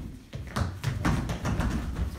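Several children running across a hard floor: a quick, uneven series of footfalls and taps that starts about half a second in.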